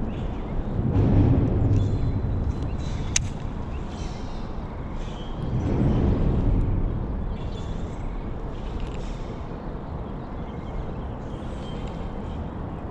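Road traffic rumbling across a bridge overhead, swelling louder about a second in and again around six seconds in. There is one sharp click about three seconds in.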